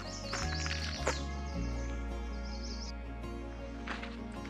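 Background music with sustained low bass notes that change a few times. A run of high, quick chirps sounds over the first three seconds.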